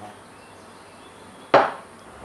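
A single sharp knock about one and a half seconds in, dying away quickly: a small container set down hard on a wooden tabletop.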